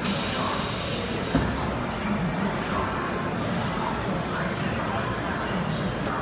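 Pneumatic heat press exhausting compressed air: a sudden sharp hiss lasting about a second and a half, ending with a single knock.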